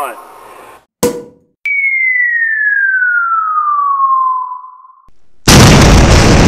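Sound-effect falling-bomb whistle: a single whistled tone sliding steadily down in pitch for about three seconds, followed near the end by a loud explosion.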